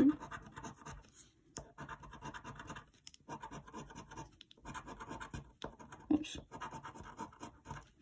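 A coin scratching the coating off a paper scratch-off lottery ticket in runs of quick rubbing strokes, with short pauses between them.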